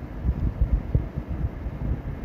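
Low, uneven rumble with irregular soft thumps from wind buffeting the microphone.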